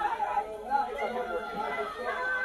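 Many people chattering at once, several voices overlapping with no single speaker standing out.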